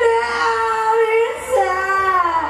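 A high singing voice holding one long note, moving to a new note about one and a half seconds in, where a second, lower voice sings in harmony beneath it.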